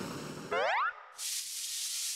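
A rising cartoon-style 'boing' sound effect, its pitch sweeping up for under half a second. Then, from a little past a second in, the steady hiss of webfoot octopus and vegetables sizzling as they stir-fry in a hot pan.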